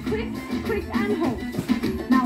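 Upbeat dance-workout music playing, with a voice over it.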